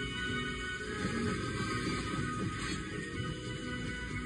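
Cartoon soundtrack music playing from a television's speakers.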